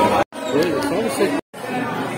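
Chattering voices of diners in a crowded restaurant. The sound drops out to silence twice for an instant, once about a quarter second in and once past the middle, like edit cuts.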